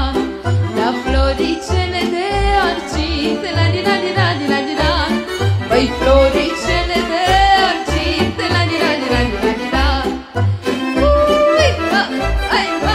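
Romanian folk party music played live by a band: a steady bass beat about twice a second under a wavering melody line.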